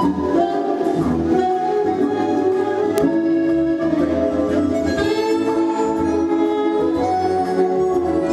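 Instrumental music with long held notes shifting from chord to chord, with a single sharp click about three seconds in.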